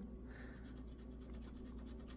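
Faint scratching of the coating on a scratch-off lottery ticket: a run of quick, light strokes.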